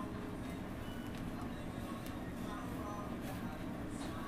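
Low steady background hum with a few faint rustles from hands working through and pinching twisted Marley hair close to the head.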